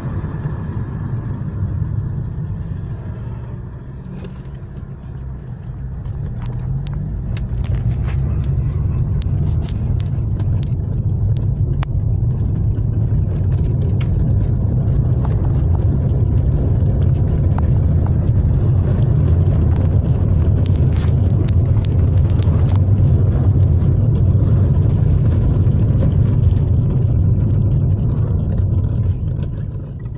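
Car being driven, heard from inside the cabin: a steady low rumble of engine and road noise that eases off for a moment near the start, then grows louder from about six seconds in.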